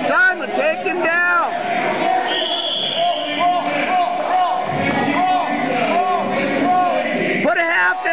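Coaches and spectators in a gym shouting encouragement to a wrestler. Short, loud calls come over each other: a cluster in the first second or so, then repeated calls roughly every half second through the middle.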